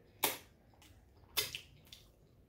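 Two short, crisp clicks about a second apart: mouth and chewing sounds of someone eating a loaded chili cheese hot dog.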